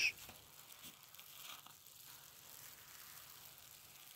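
Near silence: a faint, steady hiss with no distinct sound events.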